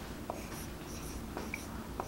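Marker writing on a whiteboard: faint scratching with a few light ticks and a brief squeak about one and a half seconds in.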